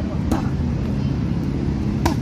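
Punches landing on focus mitts: a sharp slap about a third of a second in and another at the very end, over a steady low vehicle rumble.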